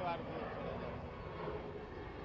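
A man's voice finishing one word at the start, then a steady low rumble of distant engine noise.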